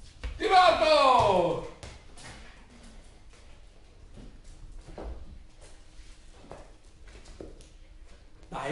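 A person's drawn-out wordless call, falling in pitch, lasting over a second, followed by a few faint taps and knocks on a hard tiled floor.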